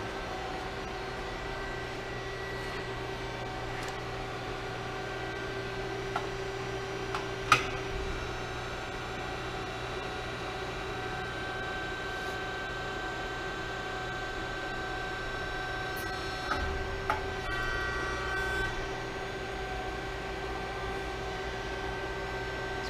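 Steady hum of a Hoston 176-ton CNC press brake's 14.75 hp hydraulic pump running idle, a quiet-running machine. A single sharp click comes about seven and a half seconds in, and a few light knocks come later on.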